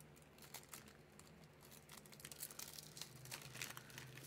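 Faint crinkling and rustling of plastic packaging being handled, with scattered light clicks.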